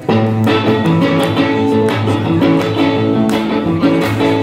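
Electric guitar played live and loud, a blues riff of ringing, sustained notes.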